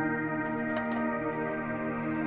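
Background music of steady, sustained tones, with a couple of light clicks a little under a second in from a metal spoon against a steel bowl.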